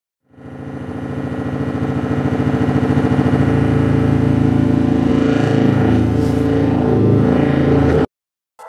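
Electronic intro music: a thick, droning synthesizer sound with a fast pulsing low end that fades in over the first couple of seconds, stays loud and steady, and cuts off suddenly at the end.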